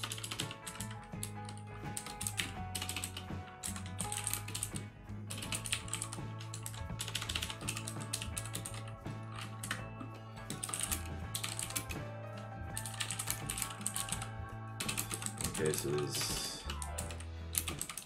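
Typing on a computer keyboard: quick, irregular key clicks in runs, with short pauses, over quiet background music.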